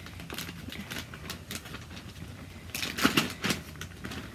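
Clear plastic zip-top bag crinkling and rustling in the hands, with scattered small clicks and a louder burst of crackling about three seconds in.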